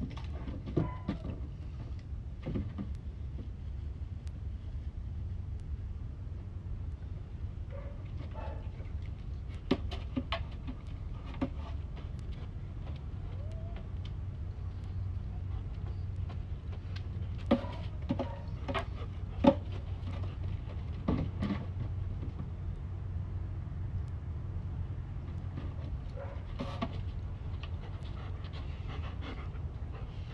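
A dog panting over a steady low rumble, with a few short, sharp clicks scattered through.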